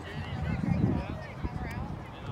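Faint, indistinct voices of several people talking some way off, with a low rumble on the microphone from about half a second to a second in.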